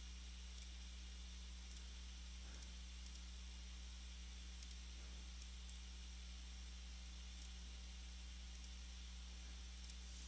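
Quiet recording with a steady low electrical hum and hiss, and a faint computer mouse click every second or so.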